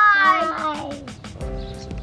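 Upbeat outro music with a steady beat of about four ticks a second. Over its first second, a child gives a long, falling call of "bye".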